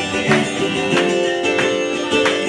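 Twelve-string acoustic guitar strummed in repeated chords, an instrumental passage with no singing.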